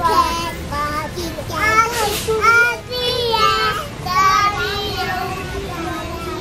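A young child singing a wordless, meandering tune in a high voice, with some notes drawn out and wavering.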